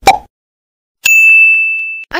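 Subscribe-button animation sound effect: a short click, then about a second later a bright, high bell-like ding that rings and slowly fades.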